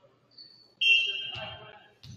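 Referee's whistle blown once in a gym: a sudden loud, shrill blast that fades over about a second. A thud lands partway through the blast.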